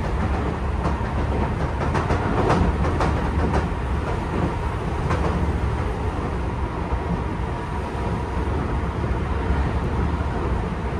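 Running sound of a Tobu 10000-series commuter train heard from inside the car: a steady rumble of wheels on rail, with several sharp wheel clicks over rail joints in the first few seconds.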